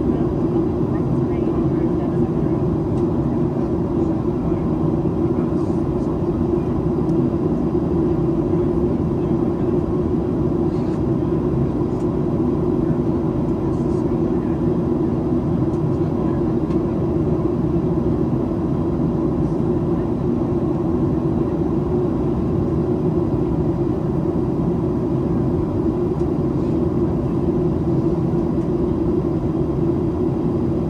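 Steady in-cabin noise of a Boeing 737-800 in descent: the hum of its CFM56-7B turbofan engines and the rush of air past the fuselage, heard from a window seat by the wing. A faint steady higher hum sits over it.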